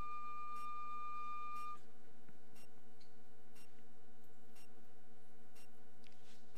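A single high, steady whistle-like note is held and stops about two seconds in. After it come faint regular ticks, about one a second, over a steady low hum.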